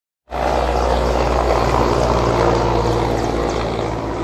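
Indian Air Force Mi-17V5 helicopter passing low overhead, its rotor and engines making a loud, steady drone that cuts in suddenly just after the start.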